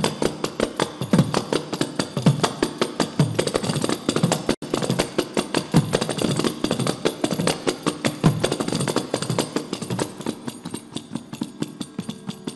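Several kanjiras, small South Indian frame drums with jingles, played together in a fast interlocking rhythm. Deep strokes slide in pitch over a constant jingle rattle, and the sound cuts out for an instant about four and a half seconds in.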